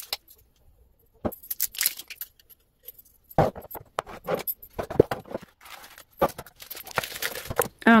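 Small glass spice jars with bamboo lids being handled on a wooden countertop: irregular knocks and clinks of glass set down and lids fitted, with scraping and rustling between them. It begins after about a second of near quiet.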